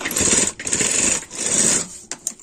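Prime sewing machine running, stitching a line of topstitching along the edge of a fabric collar. It runs in three short spells with brief pauses between them and stops just before the end.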